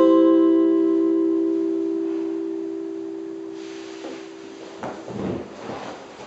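Final chord of a four-string Ozark tenor guitar ringing out and fading steadily over about four seconds, then scattered knocks and rustling as the guitar and player move.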